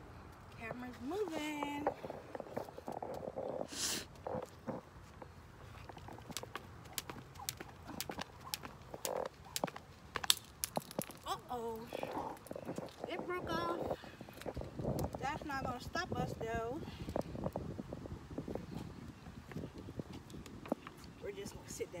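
Jump rope and its handles clicking and slapping on concrete pavement in irregular sharp ticks, with one loud click about ten seconds in. A woman's voice, indistinct, comes in at times.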